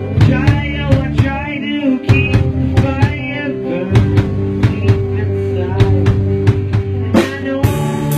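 Rock music played by a band: a drum kit keeps a steady beat of kick and snare under sustained bass and guitar notes.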